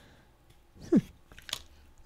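A woman's short, thoughtful 'hmm' falling in pitch, followed by a few light clicks from handling a Distress crayon and its plastic cap as it comes off.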